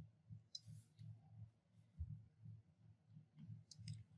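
Near silence: a faint low hum, a few soft clicks and a brief low thump about two seconds in.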